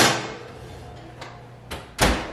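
Cast iron Dutch oven slid onto the wall oven's rack with a short scraping clatter, a couple of light clicks, then the oven door pushed shut with a knock at the very end.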